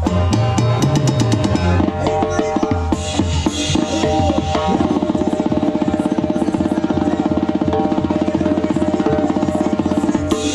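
Tarolas, a set of metal-shelled snare drums, struck with sticks over live band music. About halfway through the strokes turn into a fast, even roll held to the end, over sustained band notes.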